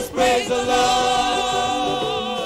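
Gospel worship singing: a voice holds long notes with vibrato over a steady musical accompaniment, with a brief drop in level just after the start.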